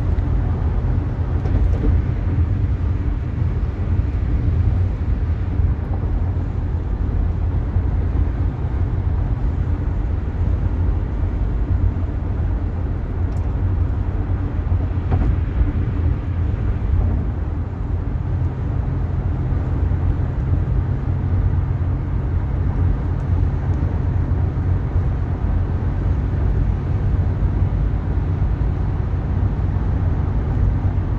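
Car driving on a freeway: steady low road and engine rumble.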